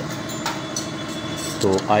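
Steady mechanical hum in the background, with a single light click about half a second in. A man's voice comes back near the end.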